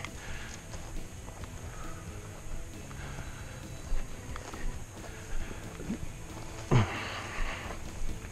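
Footsteps of a person walking downhill through dry grass and brush, with scattered crunches and the swish of stems against the legs, and a louder rustle near the end.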